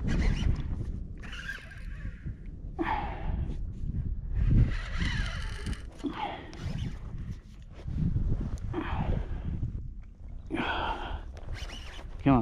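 Irregular, breathy bursts of heavy breathing from an angler fighting a hooked fish, with rod and reel handling noise over a low rumble of wind on the microphone.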